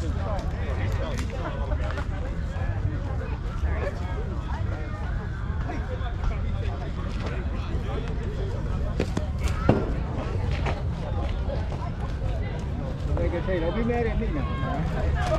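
Indistinct voices of players and onlookers talking and calling out on a baseball field, over a steady low rumble. A single sharp smack rings out about ten seconds in.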